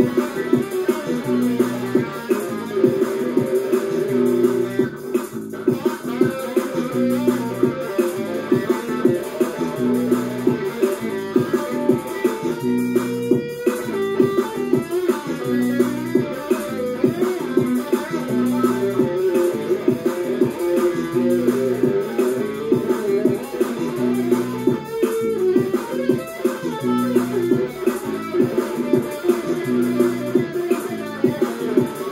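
Electric guitar played continuously with quick picked notes, working through a riff that repeats every couple of seconds.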